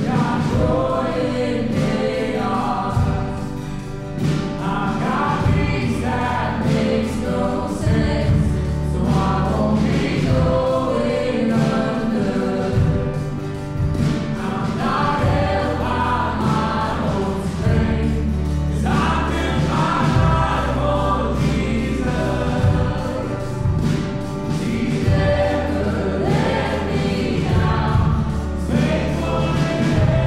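Contemporary Christian worship band playing, with drum kit, bass guitar, guitar and grand piano under many voices singing together as a congregation.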